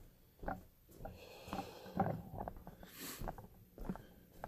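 A man breathing and sniffing, with a sharp breath about three seconds in and a few soft knocks.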